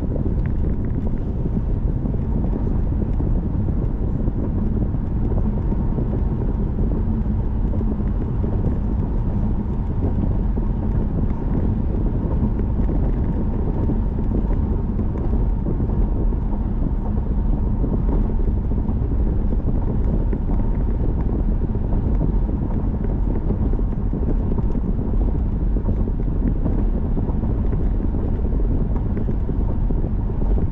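A car driving at steady speed on a concrete road: an even, low rumble of tyre and road noise mixed with wind.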